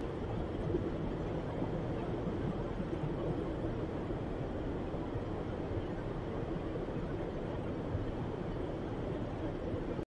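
Steady low rumble of a car travelling at highway speed, heard from inside the cabin: tyre and road noise with the engine underneath, unchanging throughout.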